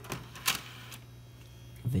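Power Mac G4's front optical drive tray ejecting: a sharp click about half a second in, then a brief mechanical whir as the tray slides out, over the computer's steady low hum.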